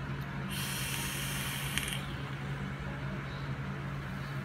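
Hiss of a vape being drawn on, with air rushing through the atomizer over the firing coil. It starts about half a second in and lasts about a second and a half, over a steady low hum.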